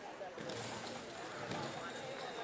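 Indistinct voices in a large, echoing indoor arena, with no clear words.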